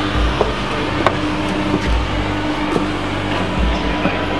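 Large-arena ambience: a dense crowd din with music over the PA, a deep bass pulse about every second and a half to two seconds, and a steady hum.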